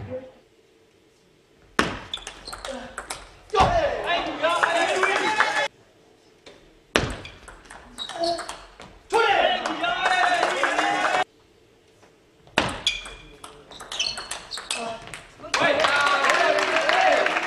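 Table tennis rallies: the celluloid ball clicks sharply back and forth off bats and table. Each rally ends in a loud burst of shouting voices. Abrupt cuts to near silence fall between the rallies.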